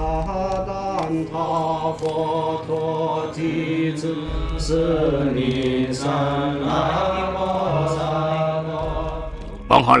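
Buddhist monks chanting together in long, sustained tones, the pitch gliding slowly. A loud voice cuts in just before the end.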